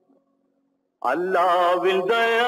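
Old Tamil film song: the last of a note dies away into about a second of silence, then a man's singing voice comes back in with accompaniment about halfway through, holding a long, wavering note.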